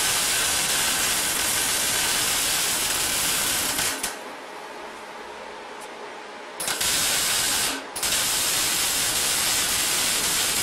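Electric arc welding on a wood-stove door: the arc's loud, steady crackling hiss. It runs for about four seconds, stops for a couple of seconds, returns for a one-second burst, then after a brief break runs again from about eight seconds in.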